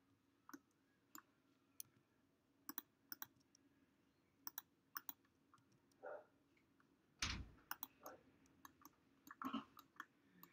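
Computer mouse clicking irregularly, some clicks in quick pairs, with a duller knock about seven seconds in.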